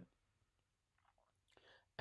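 Near silence: room tone in a pause between sentences, with a faint brief sound shortly before speech resumes.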